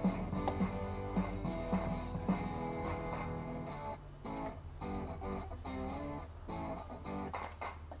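Background music led by plucked guitar, a series of short notes and chords.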